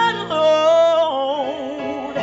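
Gospel singing: a woman's voice holds one long note that begins to waver in vibrato about a second in, over keyboard backing.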